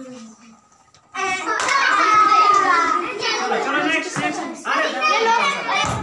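A group of children shouting and calling out together, many voices overlapping, starting suddenly about a second in after a short quiet moment.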